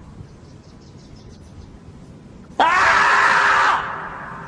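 A single loud, drawn-out scream that starts suddenly about two and a half seconds in and holds for just over a second: the dubbed-in scream of the 'screaming marmot' meme.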